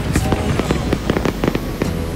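Fireworks display: aerial shells bursting in quick succession, a dense string of sharp bangs and crackles.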